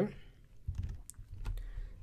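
A few quiet clicks and taps from a computer mouse and keyboard.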